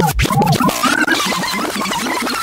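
Bassline house DJ mix at a break: the kick drum and bass drop out just after the start, and rapid scratch-like pitch sweeps rise and fall over the remaining music.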